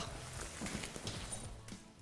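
Canvas of a camper-trailer rooftop tent rustling and its frame poles knocking lightly as the tent lid is flipped over and unfolds; faint.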